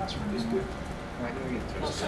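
Speech only: people talking in a room, with overlapping quiet voices.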